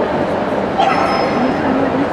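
A dog gives one short bark about a second in, over the steady chatter of a large crowd in a big hall.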